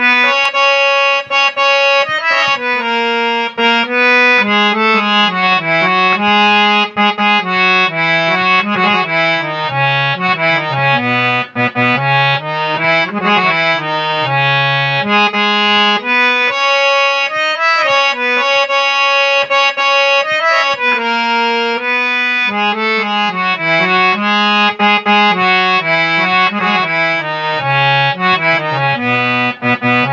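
Harmonium playing a melody: sustained notes moving above held lower notes that shift with the tune, continuous throughout with only brief dips.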